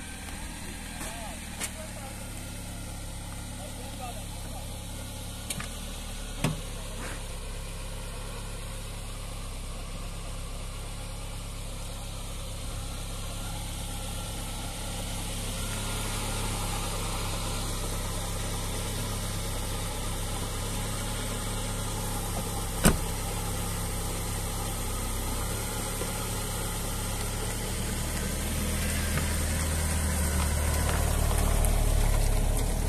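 A car engine idling steadily, with a few sharp knocks, the loudest about two-thirds of the way in. Near the end the engine grows louder as the car pulls away over gravel.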